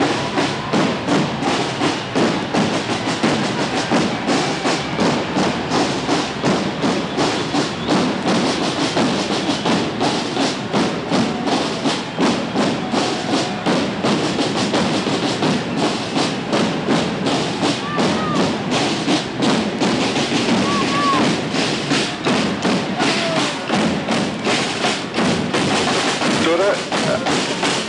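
Massed marching drums beating a dense, steady rhythm of strokes.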